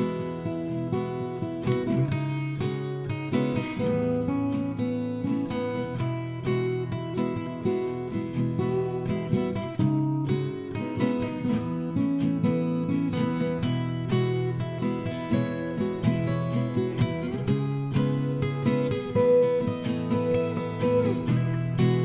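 Acoustic guitar strummed in a steady rhythm, chords ringing, with no singing.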